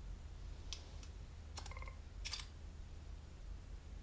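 Faint click of the capture button on Ray-Ban Meta Wayfarer smart glasses being pressed once, then a short tone and a shutter-like click as the glasses take a photo.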